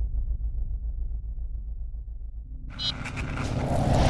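Logo-animation sound effects: a low, pulsing rumble, then about two-thirds of the way through a swelling whoosh with bright, glittery high chimes that grows louder toward the end.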